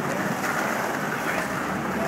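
Steady city street noise of traffic, with wind rushing on the microphone.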